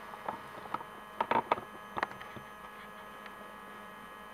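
Low steady hum with several thin steady tones from the running ozone generator and analyser, with a few light clicks in the first two seconds.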